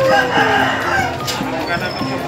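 A rooster crowing once, in a long call that rises and then falls, amid background chatter.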